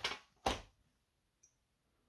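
A brief soft noisy tick or puff about half a second in; the rest is near silence.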